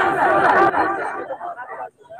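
A man's voice chanting a melodic phrase into a microphone over a loudspeaker system; the phrase trails off and fades over about two seconds, leaving a brief near-silent gap near the end.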